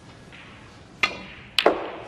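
Snooker balls struck on the table: two sharp clicks about half a second apart, the second louder with a short ring.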